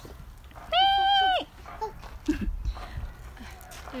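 A sheep bleating: one loud, steady call of a little under a second, starting about a second in.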